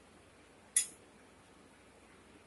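A single sharp metallic clink from a steel ladle knocking against metal, about three-quarters of a second in, with a brief ring.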